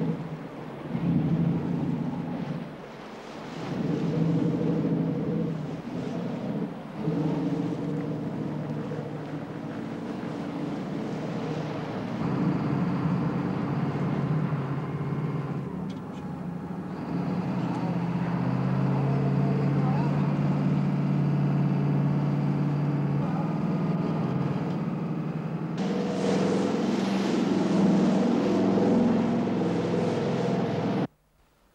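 A motor yacht's engine running with a steady drone. Near the end the rush of water from its wake joins in as the boat gets under way at speed.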